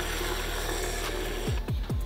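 Background music, with two quick falling low tones near the end.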